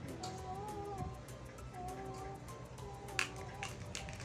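Cat meowing: two or three drawn-out, wavering meows over background music. A few sharp plastic clicks come near the end, the loudest about three seconds in.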